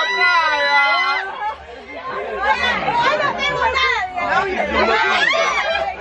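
A woman's held high-pitched shriek that breaks off about a second in, then several people laughing and shouting over one another as a group reacts to a mild electric shock passed through their joined hands.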